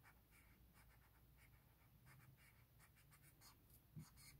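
Faint scratching of a Sharpie Magnum marker's broad felt tip on paper, in short irregular strokes as it fills in black ink.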